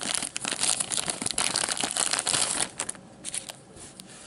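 Clear plastic bag crinkling as gloved hands open it and pull out its contents. The crackling is dense for about the first three seconds, then thins to a few light clicks.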